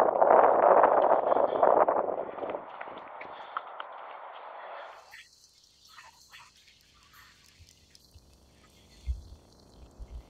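Wind buffeting the camera microphone, a loud rough rushing that comes and goes in gusts. About five seconds in it drops abruptly to a much quieter track with the wind noise removed by AI wind removal, leaving only faint scattered sounds and a few soft low thumps near the end.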